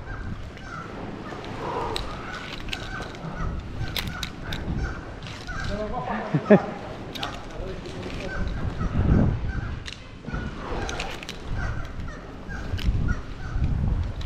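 A black-legged kittiwake colony calling, with many short, harsh calls overlapping. Scattered sharp clicks come from climbing hardware on the rope.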